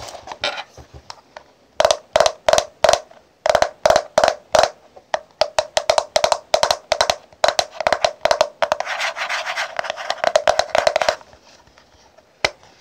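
Fingernails tapping on the case of a contouring powder compact, after soft handling sounds. The sharp taps come in quick groups from about two seconds in, then turn into fast, almost unbroken tapping before stopping shortly before the end.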